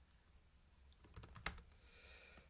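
A few computer keyboard keystrokes, short clicks bunched together a little past a second in, one sharper than the rest.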